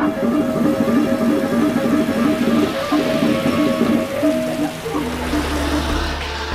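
Gamelan music, with quick repeated pitched notes in a busy running pattern. A low, steady deep tone comes in near the end.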